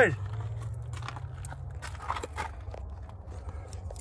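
A person's footsteps with scattered light clicks and scuffs, over a steady low rumble.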